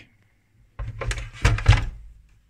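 A short run of thuds and knocks, the loudest near the end, as the bench power supply's metal and plastic case is handled and set down on the workbench.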